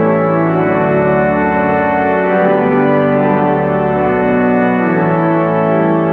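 Organ playing a slow piece of held chords, the chords changing every second or two.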